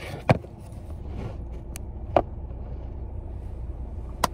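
Car engine idling steadily while it warms up, heard from inside the cabin as a low rumble, with a few sharp clicks and knocks from the phone being handled.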